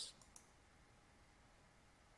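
A faint computer mouse click near the start, then near silence: room tone.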